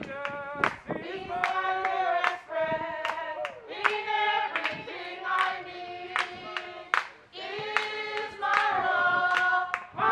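A group of people singing together, with steady hand clapping keeping the beat.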